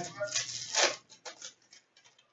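Trading cards being handled by hand: a short papery rustle, then a few soft faint clicks and slides as the cards are shuffled through.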